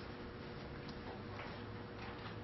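Quiet room tone with a steady low electrical hum and two faint clicks about a second and a second and a half in.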